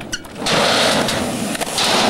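Skateboard wheels rolling over concrete, a loud, rough, steady noise that starts about half a second in.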